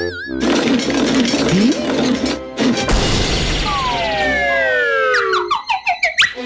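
Cartoon slapstick sound effects over background music. It opens with a short wavering tone, then a long crashing, shattering noise, then a pair of long falling whistles. A quick string of rising zips and hits follows near the end.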